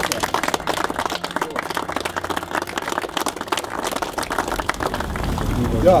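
A small crowd applauding with dense hand clapping that thins out near the end.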